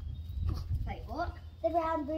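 A child's voice making two short, high-pitched vocal sounds, about a second in and again near the end, over a steady low rumble.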